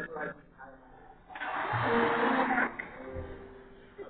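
A man's sermon heard muffled and distant through a large hall's loudspeakers, with a loud burst of noise from the crowd lasting about a second and a half in the middle.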